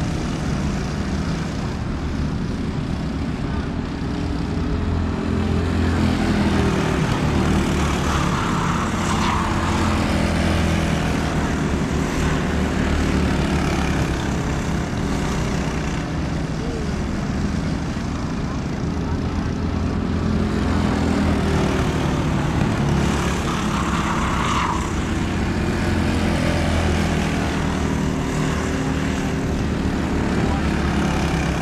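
Engines of Predator-powered dirt racing karts running at racing speed around the oval, a steady engine drone that swells and fades as karts come past, louder twice.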